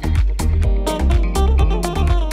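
Deep house music with a steady beat: bass notes about twice a second under sharp percussion hits.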